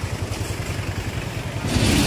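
Motorcycle engine running steadily while riding, heard from on the bike, with a burst of rushing hiss near the end.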